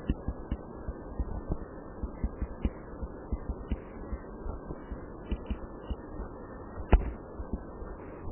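Irregular soft taps and knocks of a stylus on a pen tablet during handwriting, several a second, with one sharper knock about seven seconds in, over a steady low background noise.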